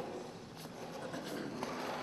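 Low background noise of a large hall with a few faint, short knocks.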